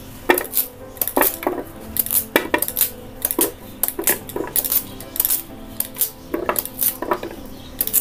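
Kitchen knife cutting raw tapioca into thin pieces over a plate: sharp, irregular clicks of the blade and falling pieces on the plate, about three a second.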